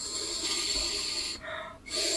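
Air blown through a brass mouthpiece held on its own to the lips, with cheeks puffed out: a long breathy rush of air with little buzz, showing the inefficient puffed-cheek way of blowing. It breaks off about a second and a half in, and a shorter puff follows near the end.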